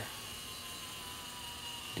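Self-timer mechanism of an Ihagee Exakta VX IIb camera running down with a faint, steady whir, releasing the spring's tension.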